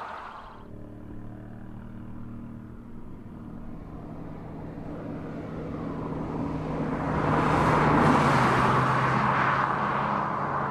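A car's engine humming steadily with road and tyre noise that swells from about six seconds in, peaking around eight seconds as the engine note drops slightly.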